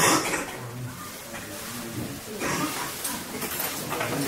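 Indistinct voices of people in a hall, faint under steady room noise.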